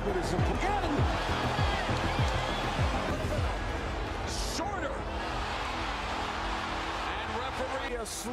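Arena crowd noise from a boxing match, many voices shouting and calling at once, with background music underneath; a brief hiss sounds about halfway through.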